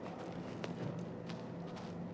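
A few faint footsteps on dirt ground over a steady low background hum.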